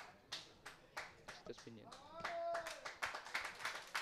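Scattered hand clapping from a small crowd of spectators, applauding a substituted player, that grows denser in the second half. A voice calls out briefly about two seconds in.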